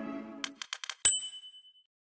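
Closing music fades out, then a few quick clicks lead into a single bright electronic ding that rings and fades away: a logo sound.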